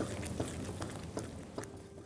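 Spatula stirring a thick, creamy gravy in a non-stick wok: soft squelching and scraping with a few light clicks against the pan, fading slightly toward the end.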